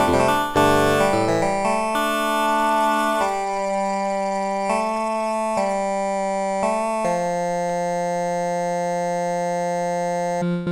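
Polyphonic wavetable synthesizer in Drambo, its wavetable oscillator set to a vocal 'ahh' wavetable, playing chords. Several quick notes come first, then held chords that change every second or so, and from about seven seconds in one long chord is sustained.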